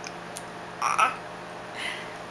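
A baby's short croaky, gurgling sound about a second in, with a fainter one near the end, from a mouth full of applesauce.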